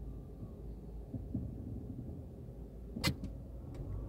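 Low, steady road and engine rumble inside a moving car's cabin, with a sharp click about three seconds in and two fainter ticks after it.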